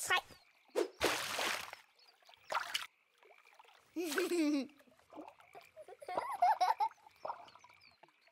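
A cartoon water splash about a second in, a chick character jumping into the river in a swim ring, followed by short voice-like calls, one sliding down in pitch.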